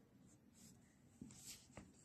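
A pen writing faintly on paper, with a few short scratching strokes from about a second in as a word is handwritten.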